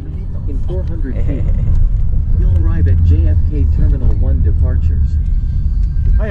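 Low, steady rumble of a car's road and engine noise heard from inside the cabin while driving, growing louder about a second in, with a voice going on over it.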